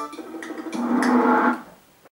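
A low, drawn-out pitched sound from a television promo's soundtrack, with a few sharp clicks before it, fading out near the end.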